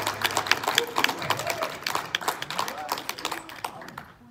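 A church congregation applauding with many separate hand claps and voices calling out, the applause thinning and fading toward the end.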